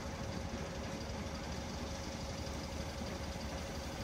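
An engine running steadily with a low, even rumble and a faint steady hum above it.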